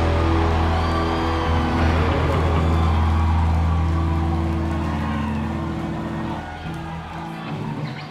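Live punk rock band's final chord ringing out on distorted electric guitars and bass, held without drums and slowly fading as the song ends, the lowest notes dropping out near the end.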